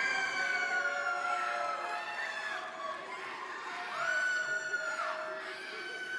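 Audience cheering with long, high-pitched whoops from several voices, one held call slowly falling in pitch over about two seconds and another starting about four seconds in.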